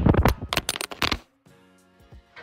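Rapid clattering knocks and rubbing from a phone being grabbed and jostled in a physical scuffle, cutting off suddenly about a second in. Faint background music follows.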